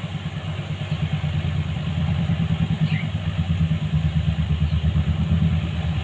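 A motor running steadily with a fast low throb, with a faint short bird chirp about three seconds in.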